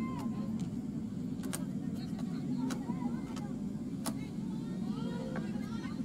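Pitch-side ambience of an outdoor football match: a steady low hum, with a few sharp knocks scattered through it, and faint shouts from players near the end.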